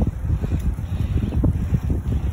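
Wind buffeting the microphone of a phone carried on a moving bicycle: a loud, gusty low rumble.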